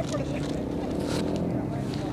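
A steady low motor-like hum with faint voices of people in the background.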